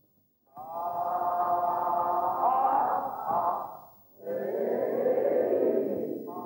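Wordless vocal tones from actors in a voice exercise: one long held tone starts about half a second in and lasts to near four seconds, bending upward briefly in the middle, then a second, lower held tone begins just after.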